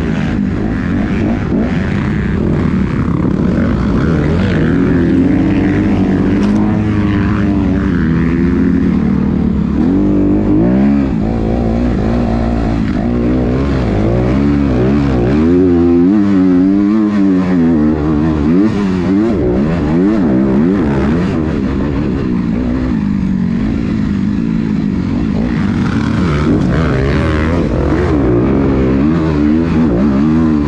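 Dirt bike engine, heard from on the bike, revving up and down continuously as the throttle is worked and gears are changed around the track, with rushing noise over it.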